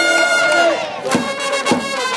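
Baseball cheering section chanting a cheer song in unison over held trumpet notes, with a steady beat of claps or drum strokes a little under two per second.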